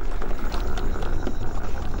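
Steady low rumble of wind buffeting the microphone, with a few faint ticks or knocks.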